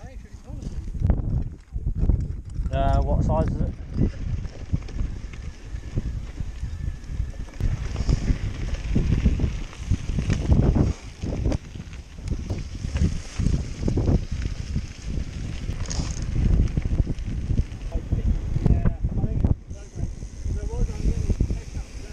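Uneven rumbling wind and trail noise on a handlebar-mounted camera's microphone as a mountain bike rolls along a dirt track, with brief indistinct voices.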